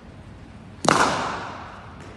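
Cricket bat striking the ball once: a sharp crack just under a second in that rings on briefly in a large indoor hall.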